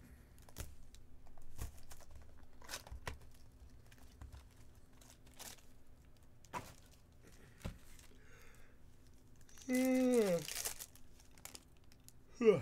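Foil wrappers of 2022 Bowman Chrome trading-card packs crinkling and tearing as packs are handled and opened, with scattered sharp rustles and clicks of cards being shuffled. About ten seconds in, a short wordless voice sound falling in pitch.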